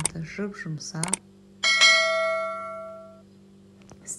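A single bright bell ding about a second and a half in, ringing out and fading over about a second and a half: the notification-bell sound effect of an animated subscribe-button overlay. Before it come a couple of sharp clicks.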